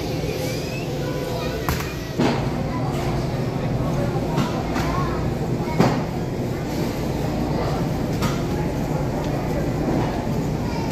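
Supermarket ambience: a steady low rumble, like cart wheels rolling on a hard store floor, with background voices and a few sharp knocks or clicks.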